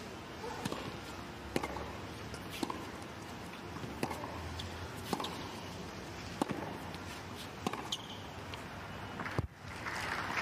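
Tennis rally on a hard court: sharp racket strikes on the ball, roughly one a second, about eight in all, the last and loudest near the end.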